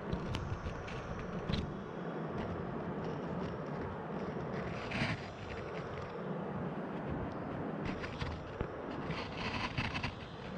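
Steady rush of river rapids, with a few brief louder bursts about halfway through and near the end.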